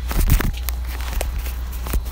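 Phone handling noise: a few knocks and rubbing in the first half-second as the phone is swung around, then faint clicks, over a steady low rumble.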